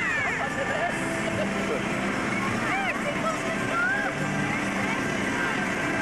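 Outdoor crowd ambience at a street procession: indistinct voices and short high calls mixed with music and a vehicle running, at a steady level throughout.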